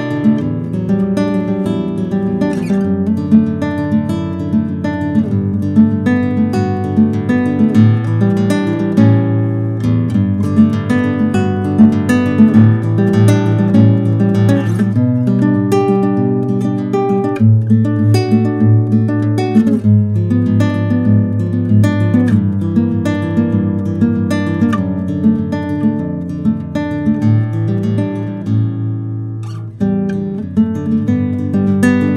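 Yamaha GC42S nylon-string classical guitar played fingerstyle: a continuous solo piece of plucked melody over steady bass notes.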